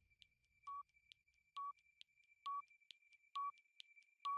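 Quiz countdown-timer sound effect marking the seconds left to answer. It gives four short beeps at one pitch, a little under a second apart and each slightly louder, with faint high ticks between them over a faint steady high tone.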